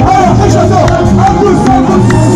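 Live Amazigh amarg band music played loud through a stage PA, with a voice singing over a steady bass.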